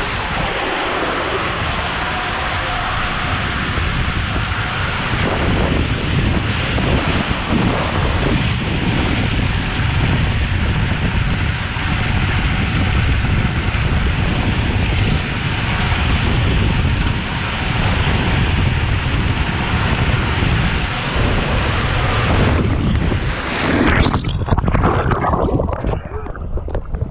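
Water and a rider rushing down an enclosed waterslide tube, a loud steady rushing noise with wind on the microphone. About 23 seconds in the sound changes to splashing as the rider shoots out into the water of the runout at the bottom.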